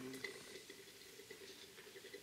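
Faint sizzling and crackling of quench oil around a hot Alabama Damascus steel knife blade as it is dipped in and out of the oil.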